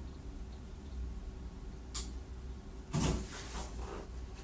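Faint, off-microphone kitchen handling noises: a single sharp click about two seconds in, then about a second of clattering and rustling near the end, over a low steady hum.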